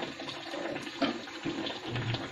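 Thick jaggery batter being stirred and beaten with a wooden spatula in an aluminium pot: wet slapping and squelching in uneven strokes, the strongest about a second in.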